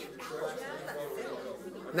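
Low background chatter: voices talking quietly, softer than the main speaker's voice.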